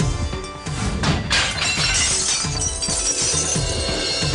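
A vase smashing with a loud shattering crash about a second in, the breaking pieces tinkling on for a couple of seconds, over a dramatic background score of repeated heavy drum hits.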